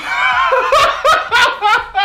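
A man laughing loudly and hard, a quick run of ha-ha pulses, about three a second.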